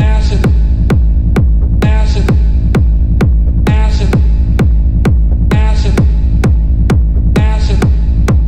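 Techno music: a steady four-on-the-floor kick drum about twice a second over a deep, sustained bass, with a pitched synth figure that comes back roughly every two seconds.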